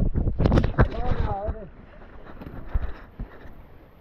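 Camera being jostled and handled: a cluster of loud knocks and crackles in the first second, then quieter rustling and small bumps, with a short voice call about a second in.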